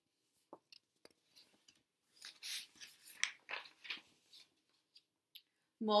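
Paper pages of a picture book rustling as a page is turned: a run of short, faint rustles in the middle, with a few small ticks either side.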